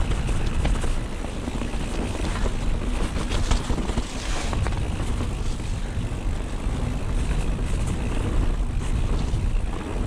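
Mountain bike riding down a wet dirt trail: wind buffeting the camera microphone with a steady low rumble, tyres rolling over mud, and scattered clicks and rattles from the bike over bumps.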